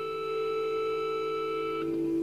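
Rock band music at a quiet sustained passage: a single held note rings steadily between strummed electric guitar chords, stepping down to a lower held note near the end.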